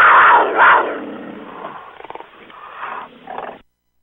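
Big-cat roar sound effect, loudest in its first second and then trailing off in a growl before cutting off abruptly near the end.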